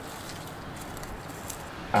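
Faint steady outdoor background noise, with a few soft ticks.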